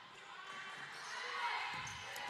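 Faint live sound of a basketball game on a hardwood gym court: players moving and the ball in play in a large hall, swelling slightly about a second in.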